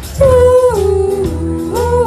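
A live student rock band with teenage girls singing a long held note into microphones, the note stepping down in pitch about halfway and rising again near the end, over the band's steady bass.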